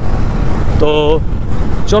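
Steady low rumble of a KTM Duke 200 motorcycle being ridden, engine and wind on the microphone mixed together.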